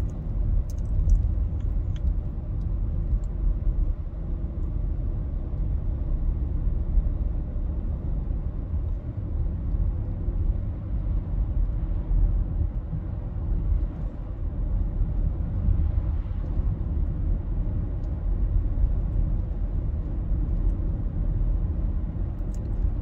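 Steady low road rumble inside the cabin of a moving car.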